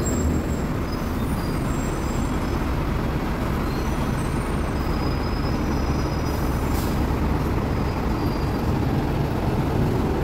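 Busy road traffic: lorries and a double-decker bus passing with a steady low rumble, and a short hiss about seven seconds in.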